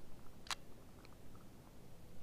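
Inline ice-fishing reel releasing its spool to drop a jig: one sharp click about half a second in, then a few faint ticks as line pays out.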